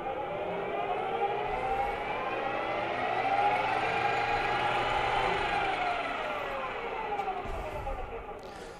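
Grizzly metal lathe jogged at its top speed of 2,000 RPM: a whine that rises in pitch as the chuck spins up, holds for a second or two, then falls as the lathe coasts down near the end.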